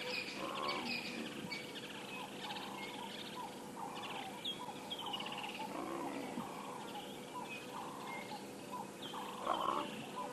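Female leopard calling for her cubs: a call about a second in, another around six seconds, and the loudest near the end. Birds chirp steadily throughout.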